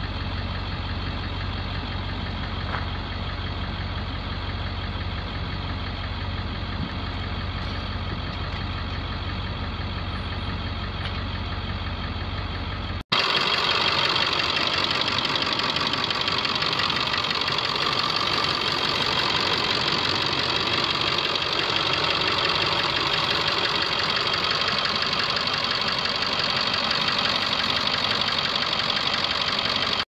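International T444E 7.3-litre diesel V8 idling steadily. About 13 seconds in, the sound cuts abruptly to a louder, brighter recording of the same steady idle.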